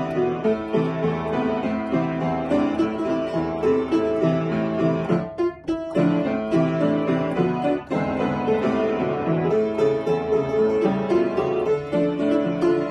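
Upright piano played solo, a minor-key piece from an A-minor medley, with a brief break in the playing about halfway through before it picks up again.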